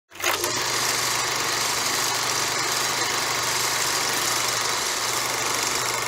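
Film projector sound effect: a steady mechanical whirring with a low hum, starting abruptly just after the beginning.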